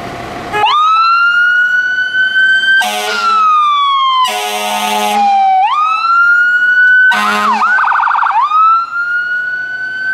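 Fire engine's siren starting up and wailing, rising and falling slowly, with three blasts of its air horn over it. A short fast yelp comes about eight seconds in before the wail climbs again.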